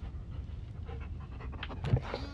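A dog panting, with a brief louder sound just before the end.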